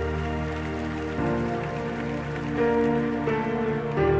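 Instrumental gospel worship music playing: sustained chords, with the harmony shifting about a second in and again a little after three seconds.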